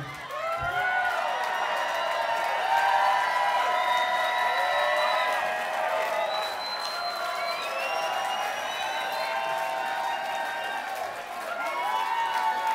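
A club crowd cheering, whooping and clapping at the end of a punk band's set, many voices yelling over one another.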